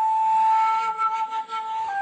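Shakuhachi, the Japanese bamboo flute, holding one long steady note that steps down slightly in pitch near the end.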